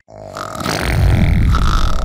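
Cartoon gas sound effect from a character: a long, low, rumbling blast that swells up about half a second in and is still going at the end.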